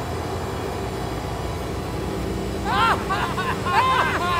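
A low, steady rumbling drone. About three seconds in, a quick run of short, warbling high glides, rising and falling, joins it.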